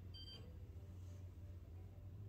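Quiet room tone in a pause between speech: a low steady hum, with a faint, brief high-pitched beep just after the start.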